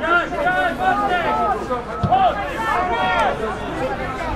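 Several voices shouting and calling out, overlapping, at a football match, with no clear words.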